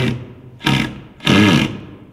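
Cordless drill run in three short bursts into wood, its motor whirring up in pitch and winding back down each time.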